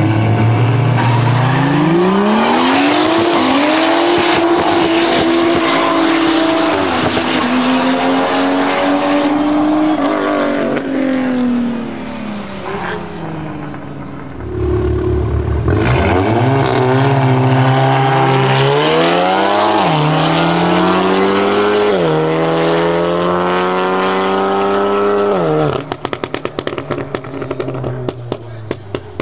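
Tuned BMW M135i straight-six with a big turbo and a valved iPE exhaust, held at steady launch-control revs and then launched hard, climbing in pitch through gear changes. A second launch follows, again a brief steady hold and then a run-up with gear changes. Near the end the throttle closes and the exhaust crackles with a rapid string of pops.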